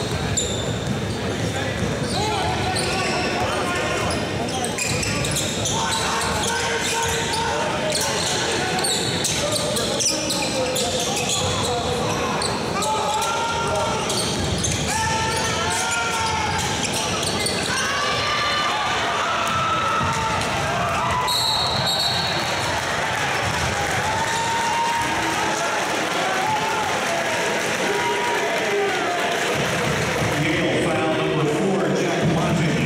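Live basketball game sound in an arena: a basketball dribbling on the hardwood court, sneakers squeaking, and crowd chatter. A brief high whistle sounds about two-thirds of the way through.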